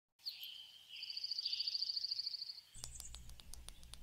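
A bird chirping, then a quick, even trill lasting under two seconds, followed by a few faint clicks over a low rumble near the end.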